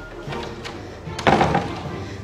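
Background music, with a door banging as it is forced open about a second in.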